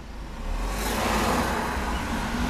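Motor vehicle engine rumble and road noise, swelling about half a second in and then holding steady.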